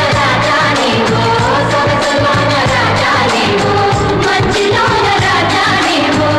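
Malayalam film song: a melodic vocal line sung over a steady percussion beat and instrumental backing.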